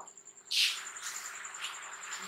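A cricket trilling steadily in the background, a thin high pulsing note. About half a second in comes a short scratchy stroke of a marker on a whiteboard, the loudest sound, followed by a few fainter strokes.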